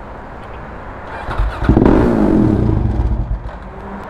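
A motor vehicle engine, heard over a low background hum; about a second and a half in it swells up, holds for about two seconds, then fades.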